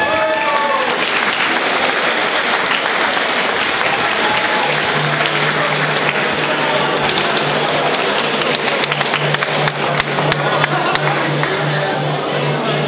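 Crowd applauding, many hands clapping, with voices in the crowd. Music comes in underneath about five seconds in, a steady low note.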